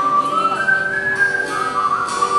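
Live acoustic song: a high whistled melody of long held notes over acoustic guitar, stepping up in pitch shortly after the start and back down near the end.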